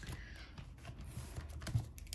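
Paper bills and a clear plastic binder pouch being handled: light rustling and a run of small clicks and taps, with one louder tap near the end.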